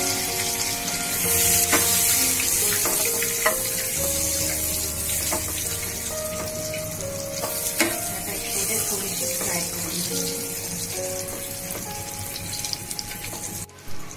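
Boiled eggs frying in hot oil in a nonstick pan, a steady sizzle with the scrapes and taps of a metal spatula turning them, under background music with a slow melody. The sound drops suddenly just before the end.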